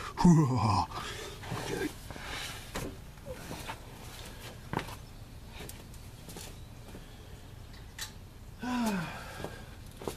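A man laughs briefly, then a few faint scattered clicks and knocks, and near the end a short hum from him that falls in pitch.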